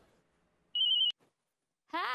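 Mobile phone ringing: one short electronic warbling trill about three-quarters of a second in.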